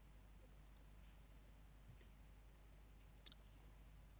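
Near silence, broken by a few faint computer mouse clicks: two a little under a second in and two more about three seconds in.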